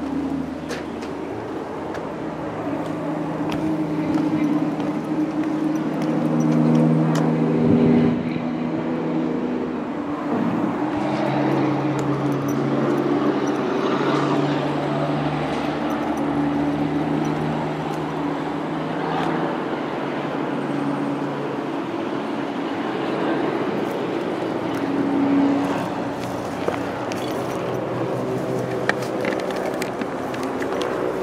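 Motor vehicle engines droning, with several held low pitches that step up and down every few seconds, typical of traffic on a road below. Scattered small knocks and rustles from walking through brush run underneath.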